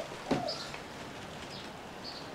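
Quiet outdoor background with a few faint, short bird chirps, and a brief soft thump about a third of a second in.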